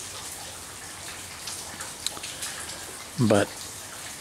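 Mild, steady rain falling: an even hiss with scattered single drops.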